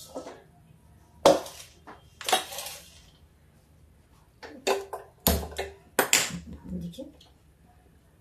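Steel utensils clattering and scraping on a steel gas stovetop as a bowl is lifted off, then a handheld spark gas lighter clicking several times at the burner until it catches.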